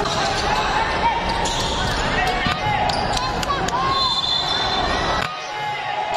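Basketball game sounds in a gym: sneakers squeaking on the hardwood court, a ball bouncing and players' and spectators' voices. A brief steady high tone sounds about four seconds in.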